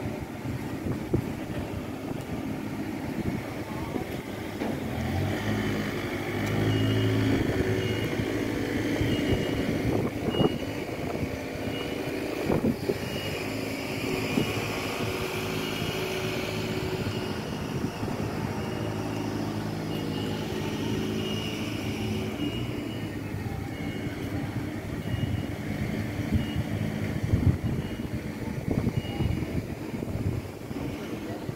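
Busy city street: a motor vehicle's engine runs, building about five seconds in and easing off after about twenty seconds. A faint high beep repeats roughly once a second, with a few scattered knocks.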